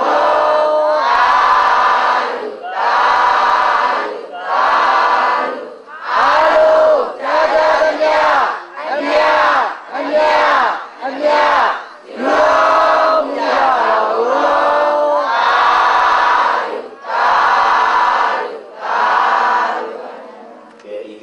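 A large crowd of Buddhist devotees chanting together in unison, in short phrases of about a second each with brief breaks between them.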